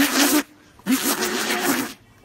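Two raspy, hissing fart sounds: a short one, then a longer one about a second later.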